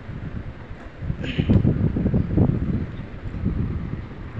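Air blowing from the outlet of a running Carrier split-type air conditioner's indoor unit onto a phone microphone held close to the vent: a fluctuating low rumble of wind buffeting, strongest in the middle.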